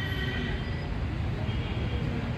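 Outdoor background noise: a steady low rumble, with faint thin high sounds near the start.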